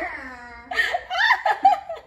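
Laughter: one drawn-out laugh falling in pitch, then a run of short bursts of laughing.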